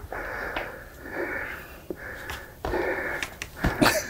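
A man breathing hard, with long effortful breaths in and out while straining on push-up bars, and a few light knocks.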